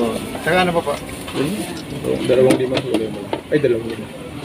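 People talking close by in several short phrases, with a few faint clicks near the middle.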